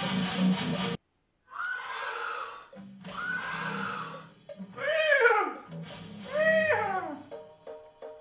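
An electric guitar riff stops abruptly about a second in. After a short silence come four high wailing calls, each rising and then falling in pitch; the last two are the loudest and slide steeply down. A low hum sits underneath them.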